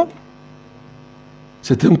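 A steady, faint electrical hum with several overtones fills a pause in a man's speech for about a second and a half, until he speaks again near the end.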